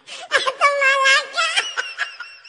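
A person's high-pitched, wavering wail without words. It starts about a third of a second in, lasts about a second, and trails off into a fainter warble.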